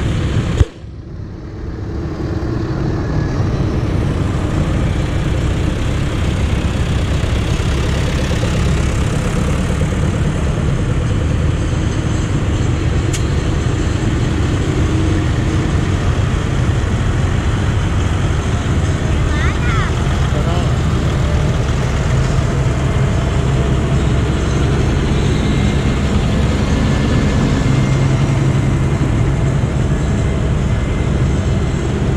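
Diesel engines of farm tractors running as they drive past in a column, a steady low rumble. A sharp knock comes just under a second in; after it the sound drops away and builds back over the next few seconds.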